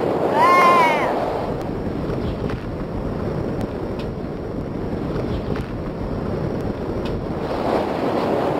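Steady wind noise buffeting the microphone in flight, with a short high-pitched vocal cry that rises and falls about half a second in.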